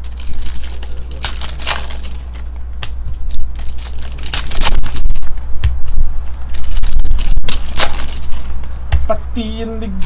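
Foil wrappers of Panini Optic baseball card packs crinkling and tearing as cards are pulled and handled: irregular crackling over a steady low hum. A man's voice starts near the end.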